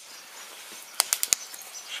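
Larch-wood fire burning in a grill bowl: a low steady rush of flame with a few sharp crackles a little after a second in.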